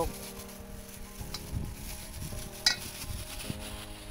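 Plastic-gloved hands squeezing and shaping sticky glutinous-rice and grated-coconut dough in a steel bowl: soft irregular squishing and plastic crinkle, with one sharp tick about two-thirds through. Soft background music with sustained notes plays underneath.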